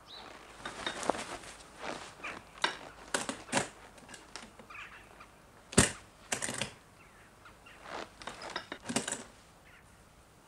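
A horse-drawn carriage door being closed and latched: a sharp clack about six seconds in, followed by a brief rattle, among scattered knocks and clicks of handling.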